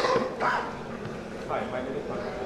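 Short, indistinct human voice sounds, unclear and too faint to make out as words.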